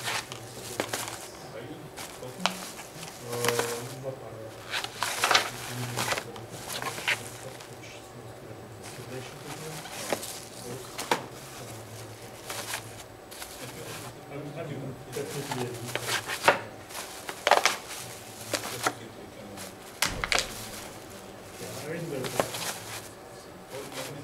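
Irregular crinkles and sharp crackles of a clear plastic bag of plastic punnets being handled and pressed against a cardboard box wall. The crackles come in scattered clusters throughout.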